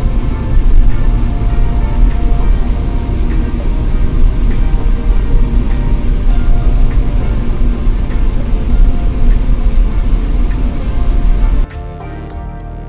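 Background music over a steady low rumble of road and wind noise from a car driving on the road. The rumble cuts off suddenly just before the end, leaving only the music.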